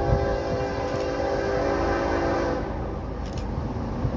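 Locomotive air horn sounding one long blast of several tones at once, lasting about two and a half seconds and then fading, from the lead unit of an approaching freight train. A low rumble runs underneath.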